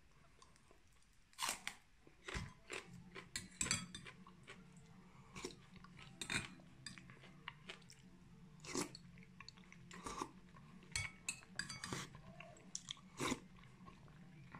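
Close-up eating sounds: a man biting and chewing crunchy raw green onion and spoonfuls of bean soup, with irregular sharp crunches about every second or so.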